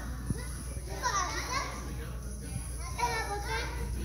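A group of young children's voices, high-pitched, rising together twice: about a second in and again about three seconds in.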